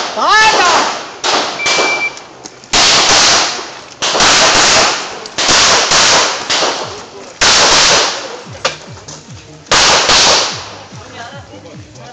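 A shot timer's short electronic start beep, then a rapid string of pistol shots from a handgun fired on a practical shooting course, shots coming roughly a second apart or in quick pairs, each ringing out with a long echo.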